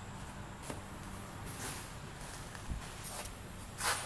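Footsteps and camera-handling rustle: a few soft knocks and rustles, the loudest just before the end, over a steady low hum.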